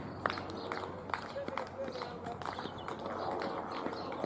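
Cricket fielders' distant shouts and calls, with a few sharp knocks scattered through.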